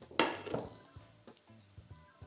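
A frying pan clinks sharply against the induction hob about a quarter second in, with a short ring, then gives a lighter knock, over faint background music.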